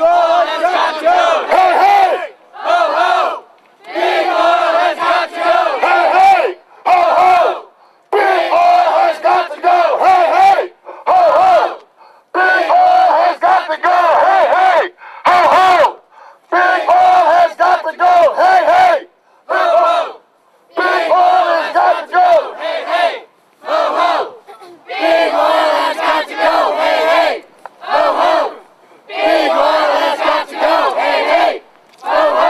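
Crowd of protesters chanting a shouted slogan in unison. The chant repeats about every four seconds: a phrase of about two seconds, then a short shout, with brief pauses between.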